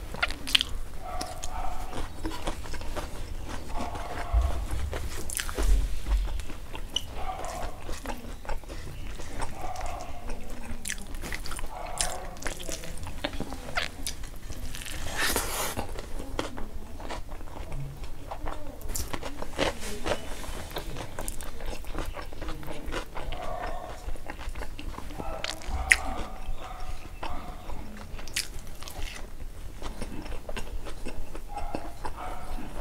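Close-miked chewing of hand-fed rice and lentils, with repeated wet mouth clicks and smacks. There are a couple of dull low thumps, about five seconds in and again near the end.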